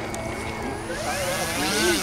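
Electric motor and propeller of an E-flite Piper J3 Cub 25 radio-control model running at low throttle as it taxis on the ground, its whine rising and falling in pitch.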